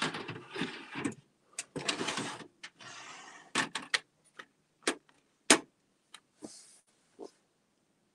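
Hands handling a pen on a table: rubbing and rustling at first, then a string of sharp clicks and taps, the loudest about five and a half seconds in.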